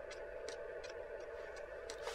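Gel nail curing lamp running with a steady hum, while a few faint light clicks sound irregularly.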